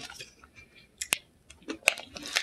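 A few short, sharp crunches of someone chewing a hard, crunchy Nature Valley granola cup with nuts, with quiet stretches between them.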